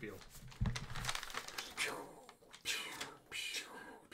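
Paper rustling and crinkling in short, irregular bursts as sheets are handled, with a brief low vocal sound about half a second in.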